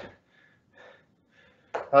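A man's voice trailing off, then near quiet with a faint breath from him while he holds a standing knee-to-chest stretch. He starts speaking again near the end.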